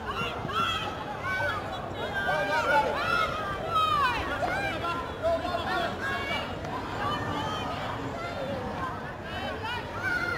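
Overlapping shouts and calls from players and sideline spectators, several voices at once with no clear words, a little louder in the first half.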